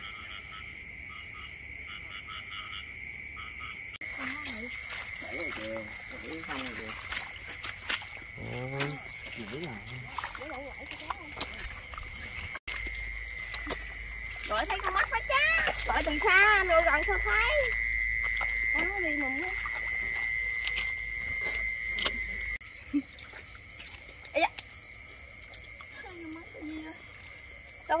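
Frogs calling in a flooded rice paddy at night: a dense, steady chorus with a high continuous drone and quick repeated calls.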